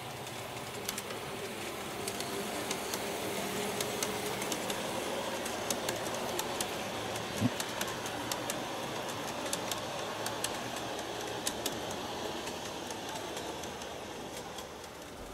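G-scale model train of Rhaetian Railway stock running past on garden-railway track: a steady rolling sound that swells as it passes and eases off near the end, with frequent irregular clicks of the wheels over the rail joints.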